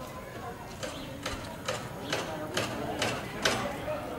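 Footsteps at a steady walking pace, about two a second, growing louder toward the end, with voices talking faintly in the background.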